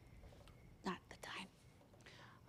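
A person's quiet voice: one short, soft murmur about a second in, followed by a breathy trace, over faint room tone.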